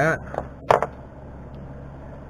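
A single sharp click from the razor blade and fine spring wire being handled on the workbench, with a fainter tick just before it, over a steady low electrical hum.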